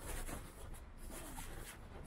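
Street ambience on a wet sidewalk: a steady background haze with irregular scuffing footsteps on wet paving.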